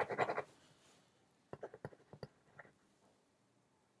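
A quiet room with a short soft sound at the start, then about six faint, sharp clicks spread over a second.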